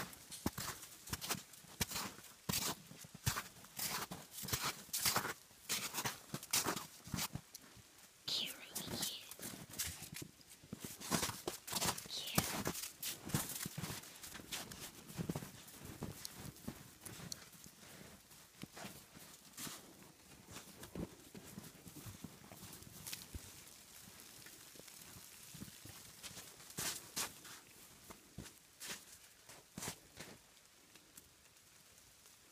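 Footsteps crunching through snow in an irregular run of strokes, dense and loud for the first half, then sparser and softer.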